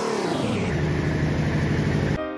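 A motor vehicle engine running, its pitch falling over about the first second and then holding steady, as when an engine slows or passes by.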